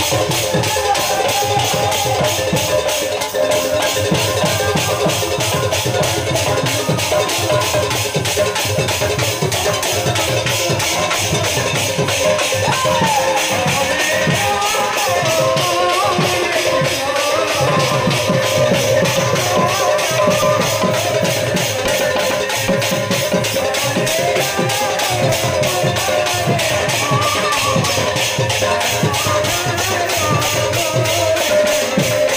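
Live kirtan music, loud and unbroken: a fast, steady percussion beat under a wavering melody line.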